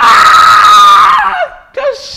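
A man's loud, high-pitched scream of laughter, held for about a second and a half and falling in pitch as it trails off.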